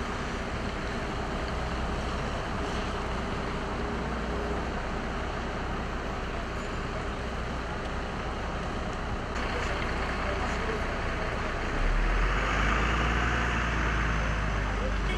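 Steady street traffic noise. About twelve seconds in, a closer vehicle adds a louder low rumble and tyre hiss.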